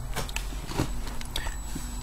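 A few faint clicks and taps of handling over a low steady hum.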